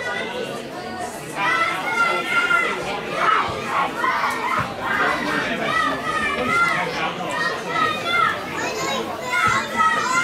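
Several high-pitched voices shouting and calling out across a football pitch in short, overlapping calls, with no clear words.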